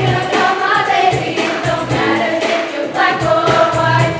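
A high school choir singing a pop number together over a band accompaniment with a bass beat.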